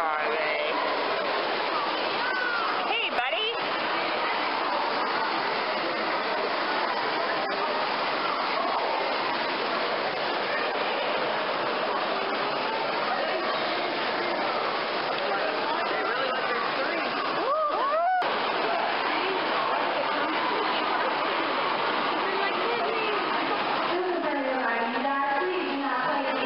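Steady rushing of water in a stingray and shark touch pool, with people talking over it now and then.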